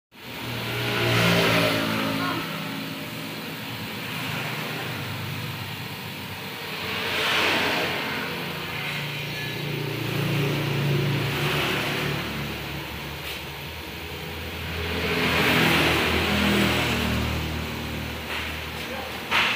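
Road traffic going past, with about four vehicles swelling up and fading away over a steady low engine hum.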